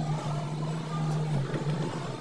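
A running engine hums steadily and low, dipping briefly about one and a half seconds in.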